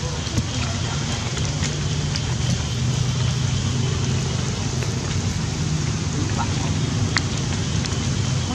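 Steady rain falling as an even hiss, with a few faint drop ticks and a low steady hum beneath it.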